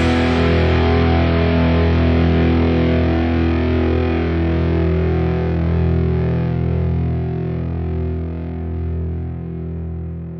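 A distorted electric guitar chord left ringing after the rest of the band stops, as the final chord of a rock song, slowly fading out.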